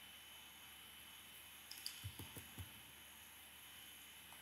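Near silence of room tone, broken about halfway through by a few faint, short clicks of a computer mouse.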